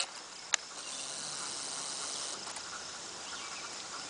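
Insects buzzing with a steady high-pitched drone, louder for the first couple of seconds and then softer. A single sharp click comes about half a second in.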